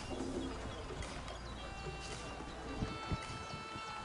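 Outdoor birdsong, with a dove cooing early on and steady high bird notes later, over faint background music.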